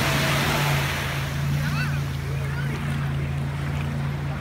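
Ocean surf breaking and washing through the shallows, a loud hiss in the first second that then eases, over a steady low hum and faint distant voices of people in the water.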